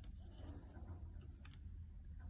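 Quiet handling of a steel watch bracelet and folded clasp, with one sharp click about a second and a half in.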